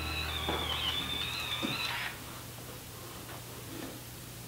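BaByliss Miracurl automatic curler's motor whining as it draws a section of hair into its chamber, then cutting out about two seconds in. Too much hair went in and twisted, and the curler sensed the tangle and stopped.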